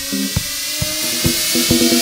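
Live electronic dance music on electronic drums and synthesizer: a steady kick drum about twice a second under a repeating low synth figure, with a hissing noise sweep building in the highs.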